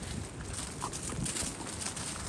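Dogs' paws running through dry fallen leaves: a quick run of crunching, rustling patter that grows busier about half a second in.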